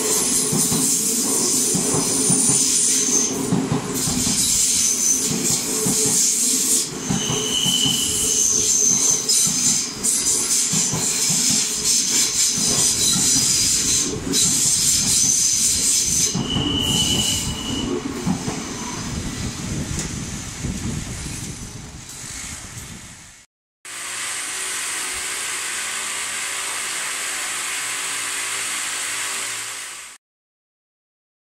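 Odakyu Line stainless-steel commuter train running along the platform, its wheels squealing in high, shifting tones over a rattling clatter of wheels on track. About three-quarters of the way through the sound cuts out for a moment, and a steadier, even hiss and rumble follows.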